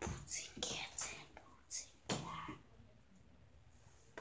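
A boy whispering in a few short hissy bursts that stop a little past halfway.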